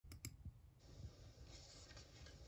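Near silence: faint room tone, with a couple of small clicks right at the start.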